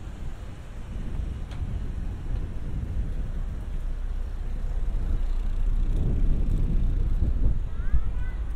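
Street ambience outdoors: a low rumble of wind buffeting the microphone mixed with road traffic, growing louder over the seconds.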